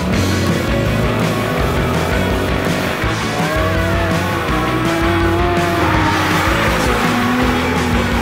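Drift car sliding with its engine running hard and tyres squealing, over loud rock music.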